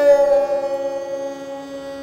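Esraj bowed in a slow aalap of Raag Puriya Dhanashri: a bow change at the start opens one long held note that slides slightly down onto its pitch and slowly fades, over a steady lower tone.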